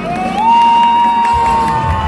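Saxophone sliding up into one long, high held note, with a crowd cheering underneath.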